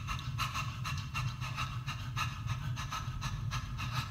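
Vocal percussion: a beatboxer making short breathy hi-hat and snare-like strokes with the mouth in a steady beat, about four to five a second, over a low steady hum, setting the groove for an a cappella arrangement.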